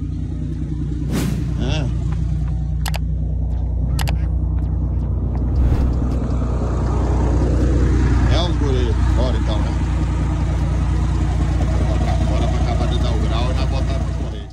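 Heavy diesel truck engine idling with a steady low rumble, with a few sharp clicks in the first four seconds.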